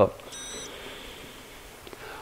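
A short high-pitched beep lasting about a third of a second, a little way in, over faint room hiss.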